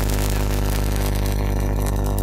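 A loud, steady low drone with a buzzing edge. It starts suddenly just before and holds at one unchanging level, covering the voice completely.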